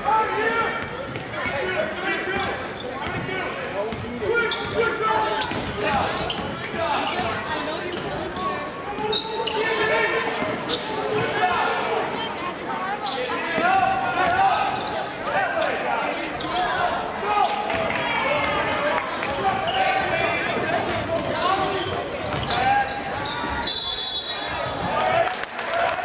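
Basketball being dribbled on a hardwood gym floor during live play, with the shouts and chatter of players and spectators running throughout, echoing in the large gymnasium.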